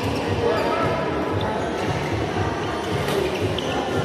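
Badminton hall sounds: shoe squeaks and footwork on the court and a few sharp racket strikes on the shuttlecock, over a steady din of voices echoing in a large hall.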